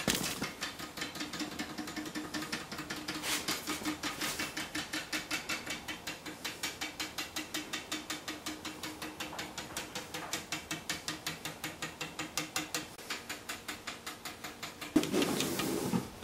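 Two spring-mounted wooden toy woodpeckers tapping their beaks against a wooden dowel pole as they jiggle their way down it, a rapid, even clicking of about five taps a second. A louder noise comes in near the end.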